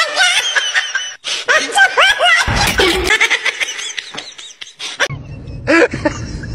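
Laughter and excited voices with pitch swooping up and down, loud throughout. Background music with a low beat comes in about five seconds in.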